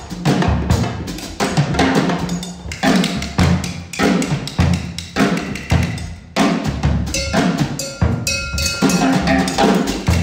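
Live jazz band playing a busy drum-kit and hand-percussion groove, with bass drum and snare hits over low double-bass notes. A few held higher tones come in about seven seconds in.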